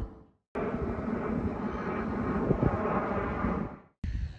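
Steady outdoor rumbling noise from the live camera sound, with no music or speech. It starts about half a second in after a brief silence and fades out just before the end.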